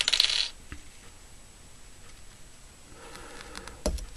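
Small fly-tying scissors snipping the tying thread at the start, a brief, crisp cut. A few light metallic clicks and a knock follow near the end as the scissors are handled on the bench.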